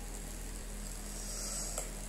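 A pause between phrases of sung Quran recitation: quiet room tone with a steady low electrical hum from the microphone's sound system.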